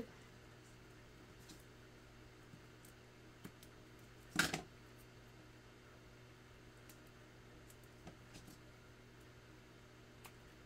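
Faint handling sounds of small die-cut paper letters and foam adhesive strips: scattered soft ticks and taps, with one brief louder rustle about four and a half seconds in.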